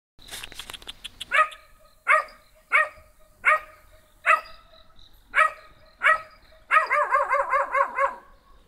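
Small dog barking: a quick run of clicks in the first second, then seven sharp single barks about every three-quarters of a second, breaking into a fast string of yaps near the end.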